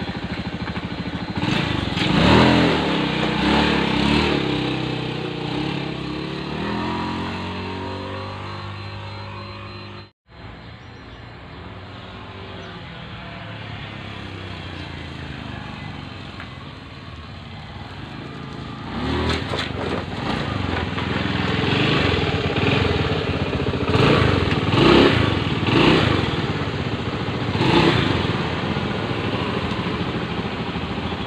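Honda Beat F1 scooter's single-cylinder four-stroke engine revving as it pulls away and fades off. After a sudden cut about ten seconds in, it comes back closer, revving up several times. It is being test-ridden after a CVT overhaul, and its pull is judged fine.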